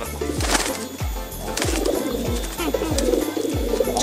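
Pigeon wings flapping a few times in the hand and pigeons cooing, over background music with a steady beat.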